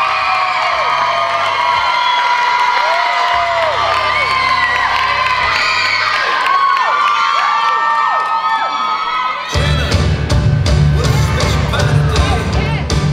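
Audience cheering and screaming, full of high-pitched whoops and shrieks. About nine and a half seconds in, the dance routine's music starts with a strong, heavy beat.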